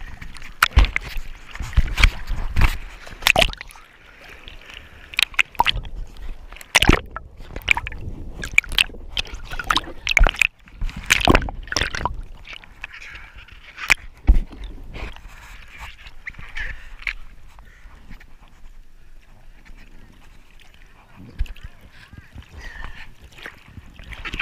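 Water splashing and sloshing over a surfboard-mounted camera at the surface as a surfer paddles, the lens dipping under at times. Frequent sharp splashes in the first half give way to calmer lapping with only occasional splashes later.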